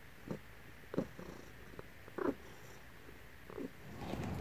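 A domestic ginger cat purring while being scratched under the chin, the purr coming through in a few short bursts about a second apart.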